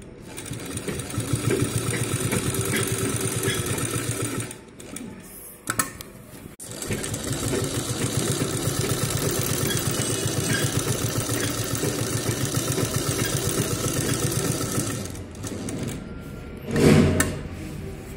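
Sahara sewing machine stitching through fabric in two fast, even runs, with a pause of about two seconds about four seconds in. A short loud burst of noise comes near the end.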